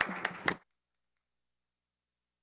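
Hand claps, about four a second, over a faint haze. The sound cuts off suddenly into dead silence about half a second in.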